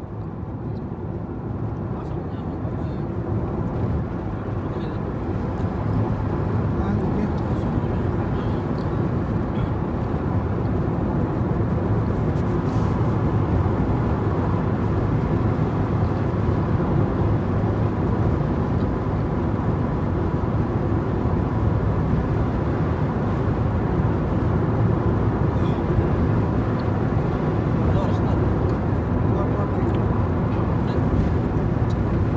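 Road and engine noise of a moving car heard from inside the cabin: a steady low rumble that grows louder over the first few seconds, then holds even.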